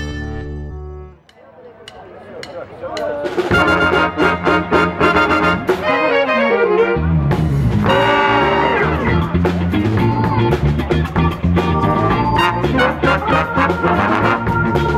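Big band playing jazz, with trumpets, trombones and saxophones over a drum kit. The earlier music fades out about a second in, and the band enters a couple of seconds later. A falling run of notes comes around the middle, then the full band plays on.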